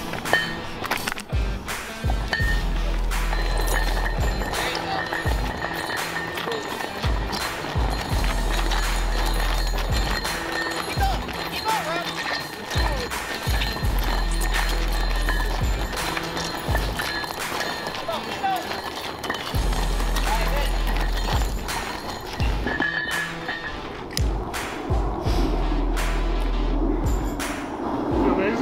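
Heavy steel anchor chain dragged across asphalt, its links scraping and clanking in repeated short strokes, with background music over it.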